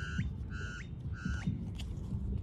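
A bird giving three short, even-pitched calls about half a second apart.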